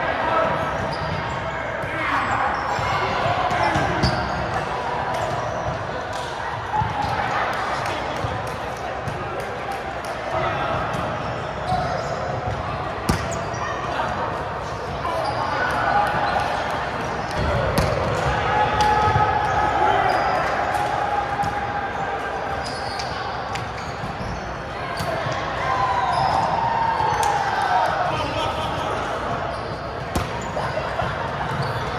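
Many overlapping voices talking and calling across a large, echoing gym, with scattered sharp slaps and thuds of volleyballs being hit and bouncing on the hardwood floor.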